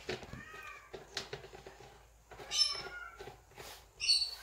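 Short high-pitched animal cries over faint room noise: a small one near the start and a stronger, bending one about two and a half seconds in.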